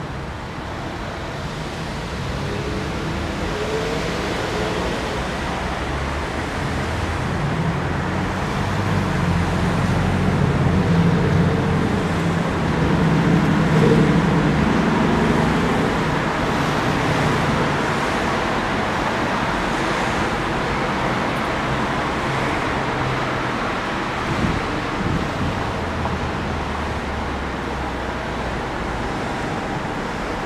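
City street traffic: the low engine hum of passing vehicles grows louder to a peak around the middle, then settles back to a steady traffic hum.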